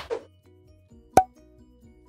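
Outro sound effects over quiet music: a sharp pop right at the start and a louder pop about a second in, with faint short plinking notes between them.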